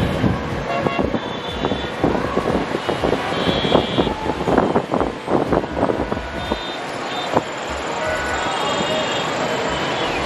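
Busy city road traffic: a steady hum of engines and tyres with short car and motorbike horn toots throughout. A run of sharp knocks or clatter comes in the middle.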